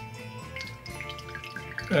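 Soft background music, with faint dripping of orange juice squeezed by hand into a small steel jigger.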